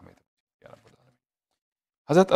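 Near silence: a pause in a man's recitation, with the end of his last word at the very start and a faint, brief sound a little over half a second in.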